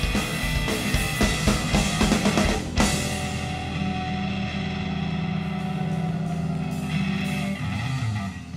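Live rock band of electric guitar, bass and drum kit playing hard, with dense drum hits. About three seconds in, one big hit ends the drumming and the band holds a sustained closing chord that rings on.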